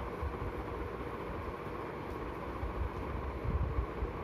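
A steady mechanical hum with faint steady tones, under irregular low thumps that come in a cluster near the end.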